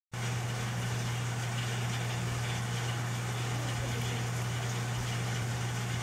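A steady low hum, like an engine idling, over a faint hiss, unchanging throughout.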